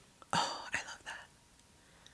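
A woman's brief whisper: three quick breathy bursts within the first second and a half.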